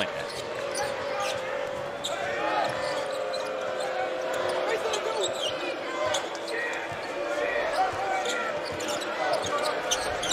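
Basketball being dribbled on a hardwood court, with short sneaker squeaks from players cutting, over steady arena crowd noise and voices.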